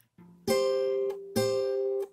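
Acoustic guitar fingerpicked: the first and second strings plucked together twice, a little under a second apart, each pair left ringing, after a faint low note at the start.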